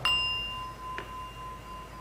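A small metal bell struck with a stick, ringing with a clear high tone that fades slowly. A second, lighter tap comes about a second in.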